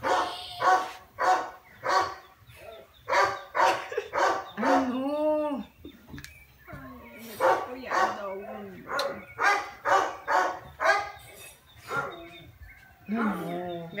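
A dog barking over and over in quick runs of short barks, about two a second, with one longer drawn-out call near the middle.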